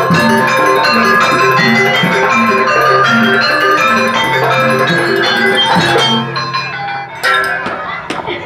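A Banyuwangi jaranan gamelan ensemble of drums and tuned gongs plays a loud, repeating cycle of ringing metallic notes over a steady low pulse. The music breaks off about six seconds in, and a few sharp clinks follow near the end.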